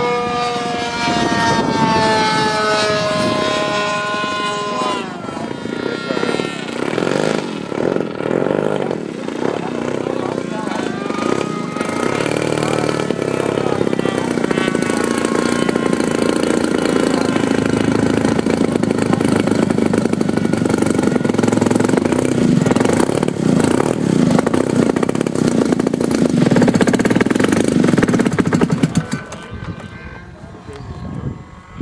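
The 3W-150 two-stroke gasoline engine of a 46% scale Bücker Jungmeister RC biplane, throttling back with its pitch falling over the first few seconds. It then runs steadily at low throttle while the plane taxis and cuts off about a second before the end.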